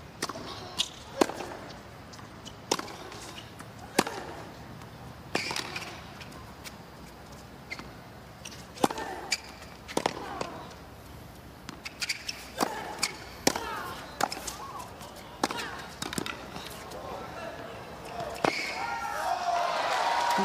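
Tennis ball struck back and forth by rackets in a long rally, a sharp pop roughly every second, with players grunting on some shots. Crowd applause rises near the end as the point finishes.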